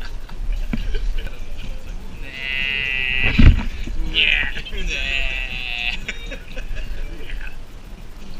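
High-pitched, squeaky vocal sounds from a person, not words, in two stretches with a short sliding squeal between them. A single loud thump comes about three and a half seconds in.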